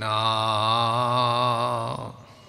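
Male voice singing Gurbani kirtan, holding one long, slightly wavering note that cuts off suddenly at the end.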